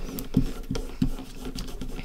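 Fingertips rubbing and pressing transfer tape down onto a wooden hanger, with a few light scratchy rubs and soft taps.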